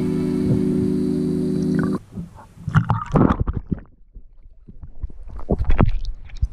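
Background music with held tones that cuts off suddenly about two seconds in. It is followed by muffled, irregular bumps and water noise picked up by a GoPro submerged in a pool.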